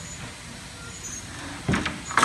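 Steady hum of factory machinery, then near the end two or three quick knocks as a long trim board is set down into a stainless steel channel.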